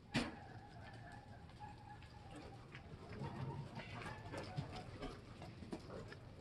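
A sharp knock just after the start, then a bird calling: one drawn-out, steady call of about two seconds, and fainter calls a little later.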